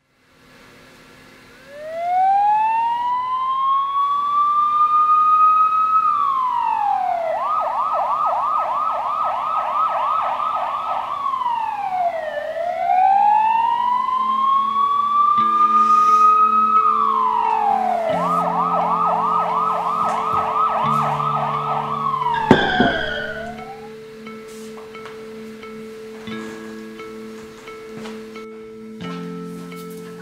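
Electronic emergency-vehicle siren: a slow rising and falling wail, then a rapid yelp, the pattern twice over. It cuts off abruptly with a sharp click a little past twenty seconds in. Low sustained tones sit beneath it and carry on after it stops.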